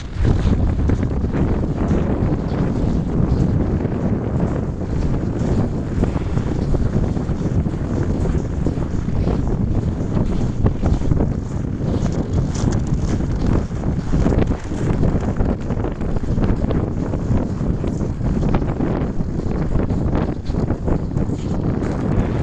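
Wind buffeting the camera microphone: a loud, steady, gusting low rumble.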